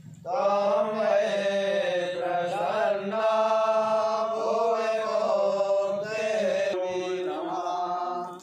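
Men chanting Hindu mantras together in unison, in long held notes on a steady pitch. They pause briefly for breath right at the start and again about seven seconds in, then carry on.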